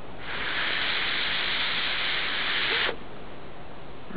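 One long, steady breath blown into a smouldering tinder nest to fan the ember toward flame. It is heard as a hiss that starts just after the beginning and stops abruptly about three seconds in.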